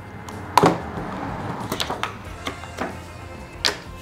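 Soft background music under sharp plastic clicks and handling noise from a plastic kit box being opened and its ring tray lifted out; the loudest click comes about half a second in, with four lighter ones later.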